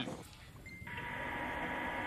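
A short electronic beep about two-thirds of a second in, then a steady electronic hiss with a constant hum tone that sets in just under a second in and carries on, the sound of an open audio line on the broadcast feed.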